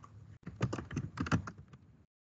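Typing on a computer keyboard: a quick run of keystrokes entering a short name, "Basic Pay".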